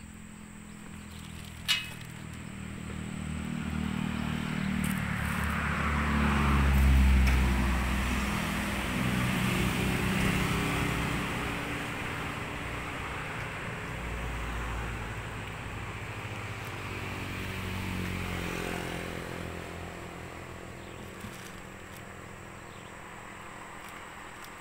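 A motor vehicle's engine passing by, swelling to a loud peak about seven seconds in and fading away, with a lower engine rumble swelling again later. A single sharp click just before the engine grows loud.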